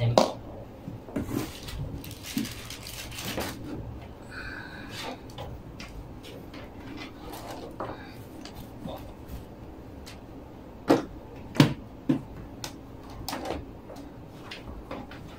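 Handling noise of computer cables being sorted and plugged in: scattered light clicks and rustles, with a few sharper plastic knocks near the end.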